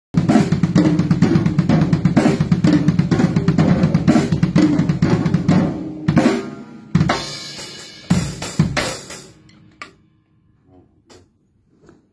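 A Sonor acoustic drum kit played in a steady groove of kick, snare and hi-hat. About six seconds in it breaks into a handful of heavy accented hits with crash cymbals that ring and fade out by about ten seconds, leaving only a few faint taps.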